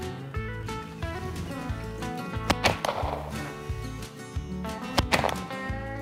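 Two shotgun shots, sharp reports about two and a half and five seconds in, over steady background music.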